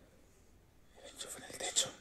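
A person whispering briefly, starting about a second in after a quiet start.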